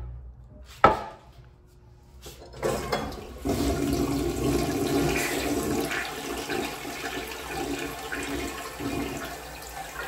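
A blue 1960s American Standard Glenwall toilet flushing: after a sharp click about a second in, water starts rushing into the bowl at about two and a half seconds, grows fuller a second later and swirls steadily down the drain.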